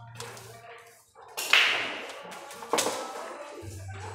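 Billiard balls clacking in a pool hall: one sharp clack about a second and a half in, ringing off in the hall, and a second sharper one just before three seconds.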